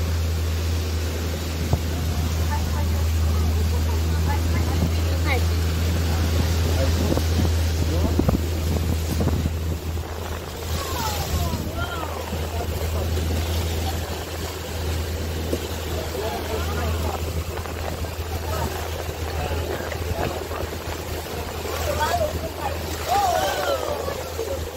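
A tour boat's engine drones steadily under the rush and splash of its wake along the hull, with wind buffeting the microphone.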